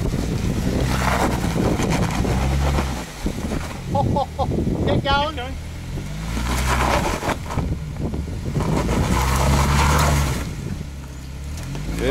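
Jeep Wrangler engine revving in three pushes as it crawls over a rock ledge, the pitch rising and falling with each push. Voices call out briefly between the first and second pushes.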